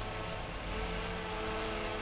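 Everflo 12-volt diaphragm pump on a softwash trolley running steadily with a constant hum while the nozzle is open. It is a pressure-on-demand pump on a pressure switch, pushing solution at about 8.3 litres a minute and 70 psi.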